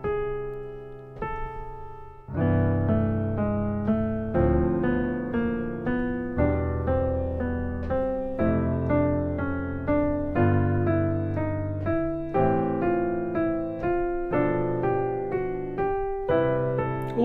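Piano playing four-note chords in C major, with the top voice stepping down a scale step, then a half step, and back up, chord by chord through the scale. A couple of softer, fading chords come first, then a steady run of struck chords from about two seconds in.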